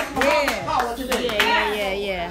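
Hand clapping under drawn-out, wordless exclamations from a man's voice over a microphone.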